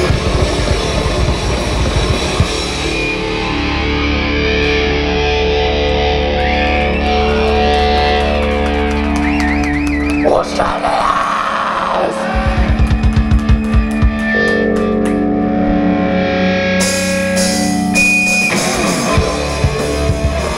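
Live thrash metal band playing: heavily distorted electric guitars and bass over drums, loud and dense, with some held, wavering high notes partway through and a short run of fast, even drum hits near the middle.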